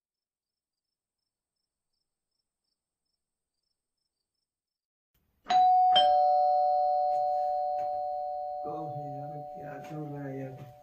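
Complete silence, then a two-note ding-dong doorbell chime about five and a half seconds in, its two notes struck half a second apart and ringing on, slowly fading. A man's voice comes in over the fading chime near the end.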